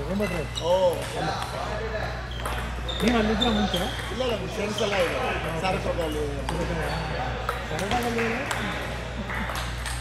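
Table tennis rallies: ping-pong balls clicking against paddles and table tops at irregular intervals, over background voices talking and a steady low hum.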